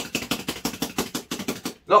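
A paintbrush being beaten rapidly against the easel leg, a fast even run of knocks about ten a second that stops near the end, shaking the cleaning liquid out of the freshly washed brush.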